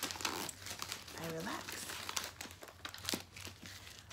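Clear plastic packaging crinkling and tearing as a cardboard box is unwrapped by hand, a dense run of small crackles and rustles. A short hummed vocal sound comes about a second in.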